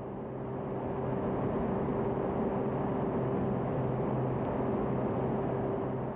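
A steady low rumbling noise with a faint hum running under it, swelling slightly in the first second and then holding even.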